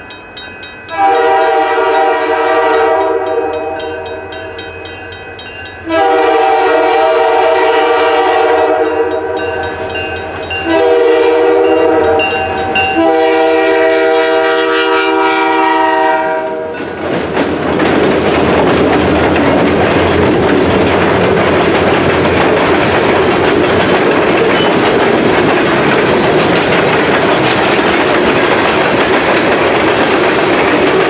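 Locomotive MEC 510's air horn sounds the grade-crossing signal, long, long, short, long, over the fast ringing of the crossing bell. From about 17 seconds in, the locomotive and a freight train of boxcars and tank cars roll steadily past the crossing.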